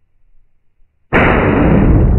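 A .308 Winchester shot from a Ruger Precision Rifle, played in slow motion: about a second in, a sudden loud report starts and stretches into a long, low rumble that fades slowly.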